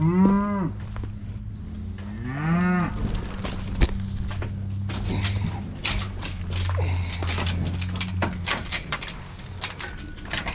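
A cow mooing twice, two short calls that rise and fall in pitch, the first right at the start and the second about two and a half seconds in. A steady low hum runs beneath, and a string of sharp knocks and clatters follows in the second half.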